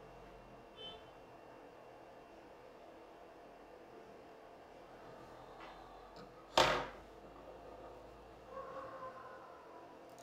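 Quiet room tone broken by one short, sharp noise about six and a half seconds in.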